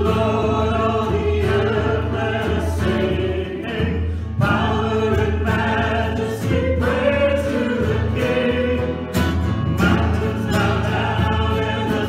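Small worship band singing a gospel song: men's and women's voices together over strummed acoustic guitar.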